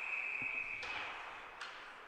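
Ice hockey referee's whistle blown in one long, steady note, stopping play to call a delayed penalty; it cuts off a little past a second in. A couple of faint knocks follow.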